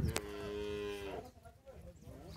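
A cow moos once, a steady call of about a second that drops slightly in pitch as it ends, just after a short click.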